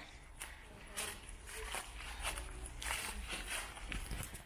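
Footsteps walking on a leaf-strewn dirt path, a handful of uneven steps, over a low steady rumble.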